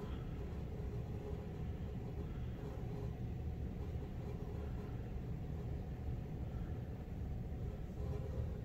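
Steady low rumble and hiss of background room noise, with no distinct event.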